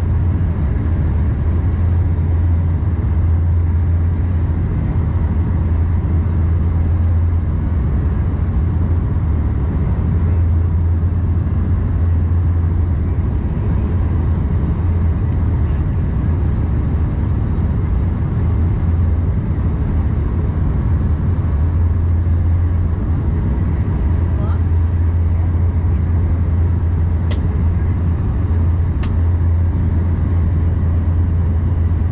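Cabin noise of a Bombardier Dash 8 Q400 turboprop heard from a window seat beside the propeller during the descent to land: a steady low propeller drone with a rushing haze of engine and air noise above it. Two faint short clicks sound near the end.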